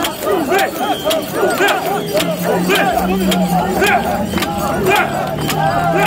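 Mikoshi bearers shouting a rhythmic carrying chant together as they heave the portable shrine along. A sharp clack keeps time about twice a second under the massed voices.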